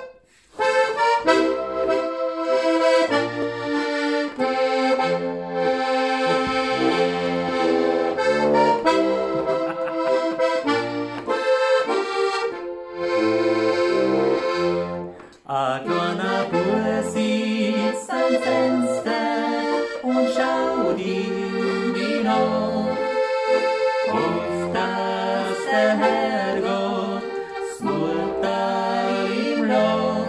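Limex Steirische diatonic button accordion playing a folk tune: chords over a stepping bass line, with a short break about fifteen seconds in before the playing resumes.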